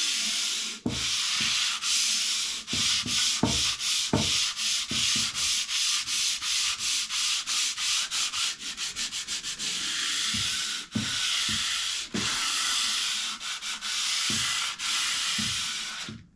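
Coarse sandpaper, folded and held by hand, rubbed back and forth over a planed timber face in quick short strokes, about three a second, with a few longer strokes later on. This is a light scuffing that opens up the grain, which planing has burnished, so that glue can get in.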